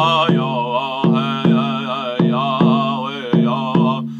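A man chanting a song with a wavering voice, keeping time on an upright painted drum struck with a stick at a steady beat of a little under three strikes a second.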